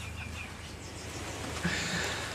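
Outdoor background noise: a steady low rumble with a few faint bird chirps near the start.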